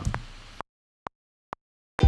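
Two short metronome clicks of a Logic Pro X recording count-in at 130 BPM, about half a second apart, over dead silence, after the fading tail of a voice.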